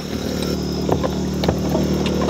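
A small engine on the bowfishing boat running steadily at an even pitch, with a few light knocks.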